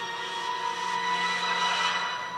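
A steady drone from the TV episode's soundtrack: a hiss with several sustained tones layered over it. It swells slightly through the middle and begins to fade near the end.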